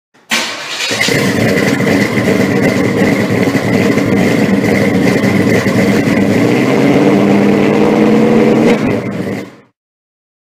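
A car engine starting and then running steadily, with a steady high whine above it, fading out about nine and a half seconds in.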